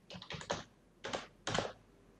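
Computer keyboard being typed on: a short run of irregularly spaced keystrokes, typing a single word.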